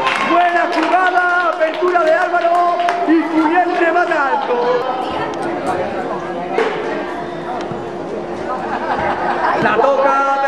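Voices chattering and calling out, with one long held vocal tone through the second half.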